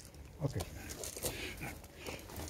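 A single spoken "okay" over a faint, low background with a few small clicks.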